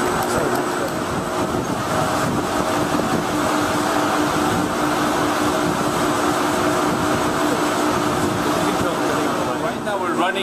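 Steady loud rush of data-center server cooling fans and forced air moving through a server aisle, with a faint steady hum running under it.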